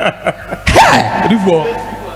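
A man's voice over a studio microphone, with a sudden loud vocal burst about three-quarters of a second in, then a held tone that fades out.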